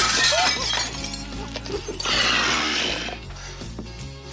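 A glass window pane shattering as a body crashes through it, with a second noisy burst of breaking about two seconds in, over a film music score.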